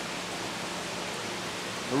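Steady hiss of a room of running aquariums, air bubbling and water circulating through the tanks, with a faint steady hum.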